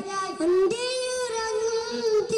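A boy singing solo into a hand-held microphone. About half a second in, his melody slides upward and then holds a long note.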